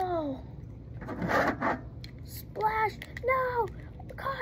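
A boy making wordless vocal sound effects: a falling cry right at the start, a breathy hiss about a second in, then two short voiced calls near the end.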